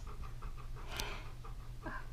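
Golden retriever panting, rapid and steady, with a sharp click about a second in.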